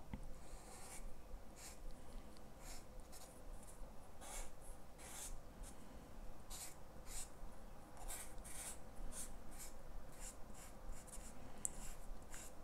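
Broad chisel nib of an Arrtx marker stroking on paper while colouring in petals. It makes faint, scratchy swishes in short strokes, about one or two a second.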